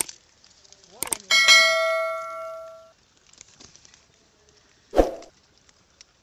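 Subscribe-button sound effect: a mouse click about a second in, followed by a bright notification-bell ding that rings and fades out over about a second and a half. A brief low sound follows near the five-second mark.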